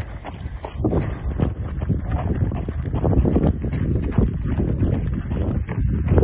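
Wind buffeting a phone's microphone: an uneven low rumble that swells and dips.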